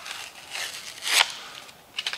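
Rustling and scraping handling noise as the air file is turned over in the hands, with one short, sharp knock about a second in. The tool is not running.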